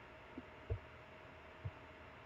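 Three soft, dull thumps over a faint steady hum, the middle thump the loudest.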